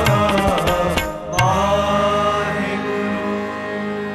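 Sikh shabad kirtan: a sung line over harmonium with tabla strokes, the tabla stopping about a second in. After one sharp stroke a steady held chord sounds on, without percussion.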